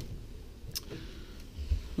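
Quiet footsteps and camera handling while walking into a motorhome: a faint low rumble, one sharp click about three-quarters of a second in, and a low thump near the end.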